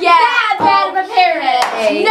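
Children chanting a sing-song rhyme together in rhythm, with the hand claps of a clapping game.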